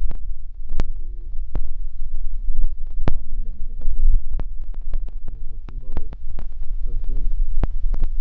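Low rumbling throb with scattered clicks and knocks from a phone being moved around and handled, with a few short bits of muffled voice.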